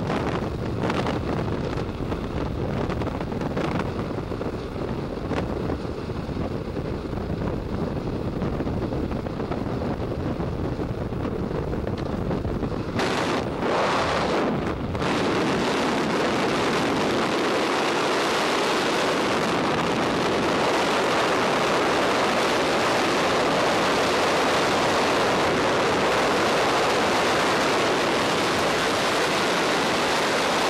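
A skydiver's camera first picks up a lower rumbling noise. About 13 to 15 seconds in it changes to the steady, even rush of freefall wind over the camera and microphone.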